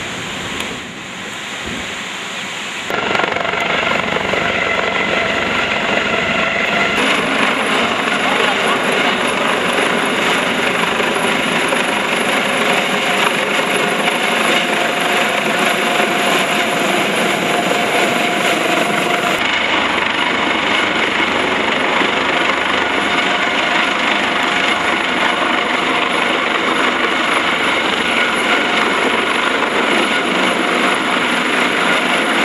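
Coast Guard HH-65 Dolphin helicopter hovering low overhead: loud, steady rotor and turbine noise with a high whine, coming in suddenly about three seconds in after a quieter stretch of outdoor noise.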